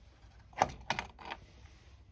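Four light clicks and taps in quick succession from small plastic parts being handled: the black plastic turbine wheel and housing of a mini hose-powered hydro generator turned over in the hands.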